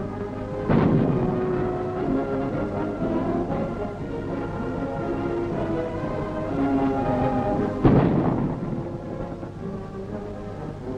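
Two heavy booms of a destroyer's guns firing, about a second in and again near the end, each trailing off in a rumble, over orchestral film music.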